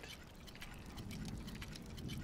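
Faint background ambience between spoken lines: a low steady hum that swells slightly after the first second, with light ticking.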